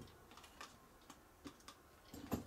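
Near silence: quiet workshop room tone with a few faint, scattered small clicks, the kind made by handling tools and parts on a bench.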